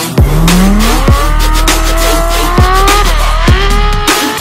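Ferrari F12's V12 engine revving as the car slides through snow, its pitch climbing steadily for about three seconds, dipping briefly near the end and then holding. It is mixed with electronic music that carries a deep bass and a kick drum about once a second.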